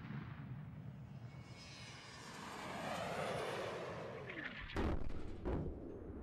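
Rocket-propelled test sled's rocket motors firing as it races down the track. The rushing sound swells about midway, with a tone sweeping down in pitch as it passes, then fades. Two sharp bangs come near the end.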